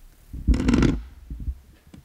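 Handling noise from a podium microphone's stem being moved, picked up by the microphone itself. A loud rumbling, crackling burst comes about half a second in, followed by a few faint knocks.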